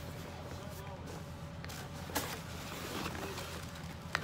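Cardboard box being handled and its flaps opened, with a few short sharp rustles, the loudest about two seconds in, over a steady low hum.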